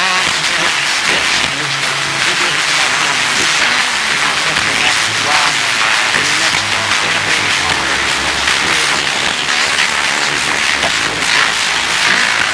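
Analog TV broadcast audio: a man's voice, unclear and muffled, under loud steady hiss.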